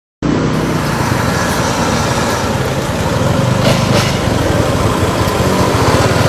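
Road traffic running steadily, with a motor scooter's engine coming close and passing near the end.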